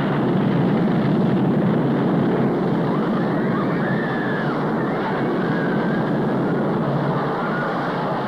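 Steady, loud rushing roar of a staged airliner crash, like jet engines and rushing air. Faint wavering higher sounds rise through it around the middle.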